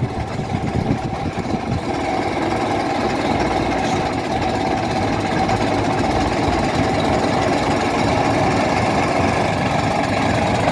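Half-cab double-decker bus's diesel engine running as the bus moves slowly off, the sound growing steadily louder as it comes closer.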